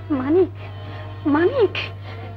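Two short wailing cries, each rising and then falling in pitch, one just after the start and one past the middle, over a steady low mains hum from the old soundtrack.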